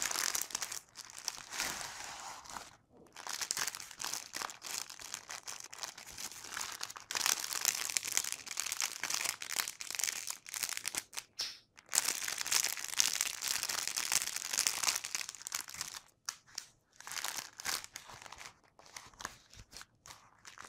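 Bubble wrap and plastic packaging crinkling in dense stretches as hands unwrap a bubble-wrapped roll, with short pauses about 3 s in, around 11 s and near 16 s.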